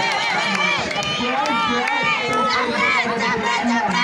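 Crowd of spectators shouting and cheering, many voices overlapping at once.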